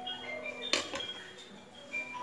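Light background music with a tinkling melody of held notes, and one sharp clink about three-quarters of a second in.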